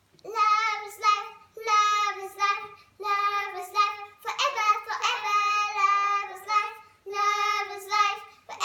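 Young girls singing a slow tune without accompaniment, in held notes broken into short phrases, starting about a quarter second in.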